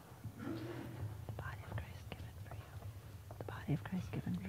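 Hushed, whispered talk with a few soft clicks, over a steady low hum.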